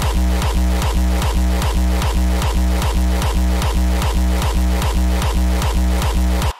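Hardstyle track playing back from FL Studio at 150 BPM: a heavy, distorted, pitched kick drum on every beat, about two and a half a second, with a strong low end.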